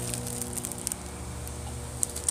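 Plastic zip-top bag being pulled open and handled, giving a few short, crisp crackles over a steady low hum.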